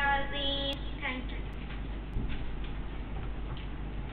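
A girl's voice through a handheld microphone holds a drawn-out, sung-like phrase for about the first second. Then there is a steady microphone hiss and hum with a few faint clicks.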